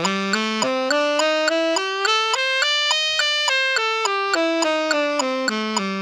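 Tenor saxophone playing the B minor blues scale (as written for tenor) in short, even notes, stepping up to the top of its run about halfway through and then back down. A metronome clicks steadily with each note.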